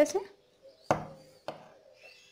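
Scissors cutting thin non-woven bag fabric: two sharp snips about half a second apart, trimming the edge of a pleated mask.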